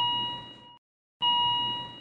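Heart-monitor beep sound effect: a clear electronic tone sounding twice, about a second and a half apart, each lasting about a second and fading away.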